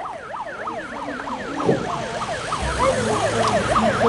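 A warbling, siren-like whistling: quick up-and-down pitch sweeps, several a second and overlapping one another, with a low rumble coming in past halfway.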